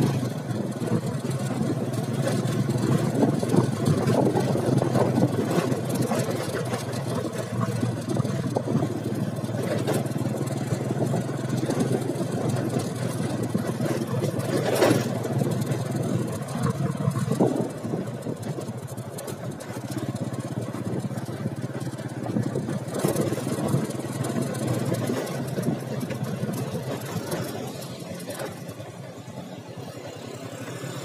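Motorcycle engine running steadily while riding, with wind rushing over the microphone.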